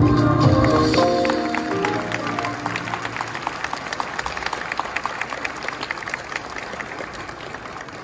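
Presentation music with held notes fading out over the first couple of seconds while an audience applauds; the clapping carries on alone and dies away toward the end.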